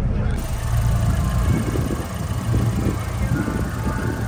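Wind buffeting the microphone in a loud, uneven low rumble, with people talking in the background.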